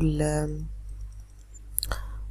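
A couple of sharp computer mouse clicks near the end, as a presentation slide is advanced, following the drawn-out tail of a spoken word at the start. A steady low electrical hum runs underneath.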